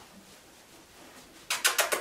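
Quick run of squeaky kissing noises made with the lips to call puppies, about five in half a second, starting about a second and a half in.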